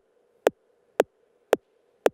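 Steady computer-generated beat from live-coded Overtone music: a short, sharp percussive hit about twice a second, four in a row, with the melody muted so that only the pulse is left over a faint hum.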